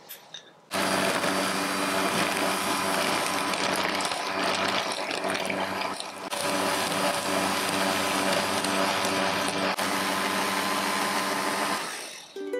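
Electric hand mixer starting suddenly about a second in and running steadily, its twin wire beaters whipping butter into a yellow cream in a glass bowl; it stops just before the end.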